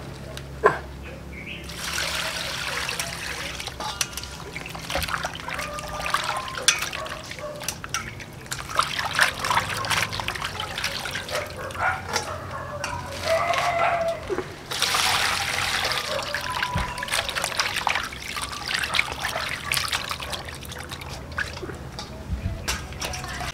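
Water splashing and trickling in a stainless steel bowl as raw pork intestines are washed by hand, squeezed and lifted so the water runs off them back into the bowl. The splashing starts about two seconds in and continues unevenly, with small knocks against the metal bowl.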